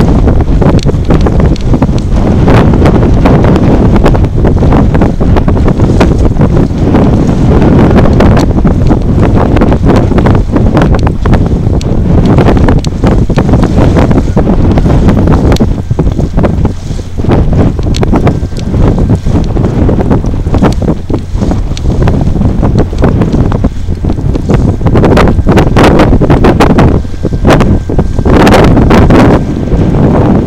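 Heavy wind buffeting the camera's microphone: a loud, low rumble that gusts and dips throughout. A faint steady tone comes in about halfway through and fades near the end.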